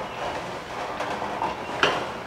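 Steady bubbling of curry gravy cooking in a steel pot on a gas stove, with a steel ladle knocking once against the pot near the end.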